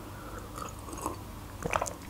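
Quiet sips and swallows of water from a drinking glass close to the microphone, with a few faint clicks near the end.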